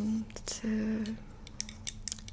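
Fingernails tapping and clicking on a plastic facial spray bottle: a run of short, sharp clicks in the second half. Before them come two drawn-out, level-pitched hesitation sounds in a soft female voice.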